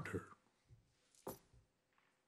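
A man's voice finishes a word and falls silent, leaving a quiet pause in a small room, broken a little over a second in by one short, sharp click.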